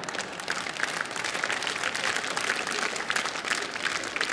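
Studio audience applauding a joke, many hands clapping at a steady level.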